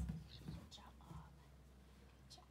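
A dull thump as a Border Collie's front paws land on an inflated exercise ball, followed by a couple of softer bumps as he settles on it.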